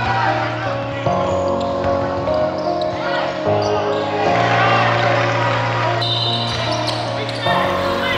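Background music with a vocal over sustained bass notes that change every second or two.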